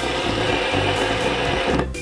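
Three-armed fidget spinner spinning fast on a tabletop, its bearing giving a steady whir.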